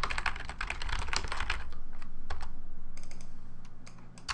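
Typing on a computer keyboard: a fast run of keystrokes for about two seconds, then a few scattered key presses near the end.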